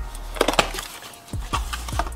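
A cardboard box being opened by hand: two sharp cardboard snaps about half a second in, then softer scraping as the lid comes up.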